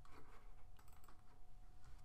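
Computer keyboard typing: a run of faint, irregular key clicks.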